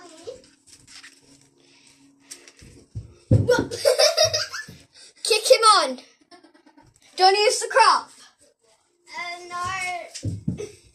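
A girl's high-pitched voice in four loud wordless bursts of calling and laughing, starting about three seconds in.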